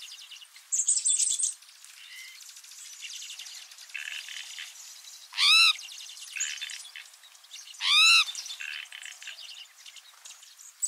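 Songbirds calling and chirping, with a short buzzy trill about a second in. Two loud, nasal, rising-then-falling calls come about halfway through and again some two and a half seconds later.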